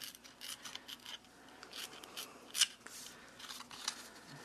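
Cardstock being torn by hand along its edge: a series of short, faint rips and paper crackles at irregular intervals, the sharpest about two and a half seconds in.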